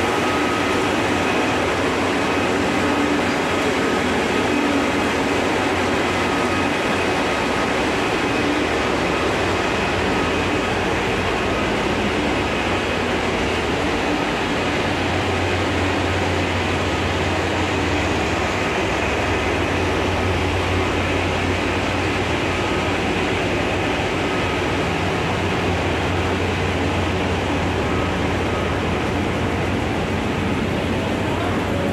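Tea-processing machinery running steadily: rotating drums, conveyors and their electric motors, making a continuous mechanical rumble with a faint whine. A deeper hum grows stronger about halfway through.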